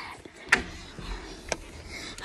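Two sharp clicks about a second apart over low rumbling handling noise as a child climbs into a wardrobe to hide.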